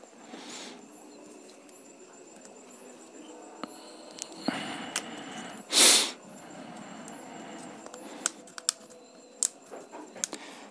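Hands handling a smartphone while its back cover is being worked loose: faint scraping and a few small clicks, with one short, louder scrape about six seconds in.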